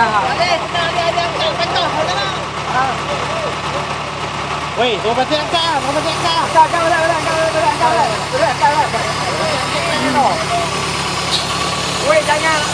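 Diesel engine of heavy machinery idling steadily, with several men's voices calling out over it.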